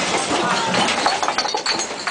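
A scuffle in a crowded room: a rapid, irregular jumble of knocks and thuds from feet and bodies, with voices over it.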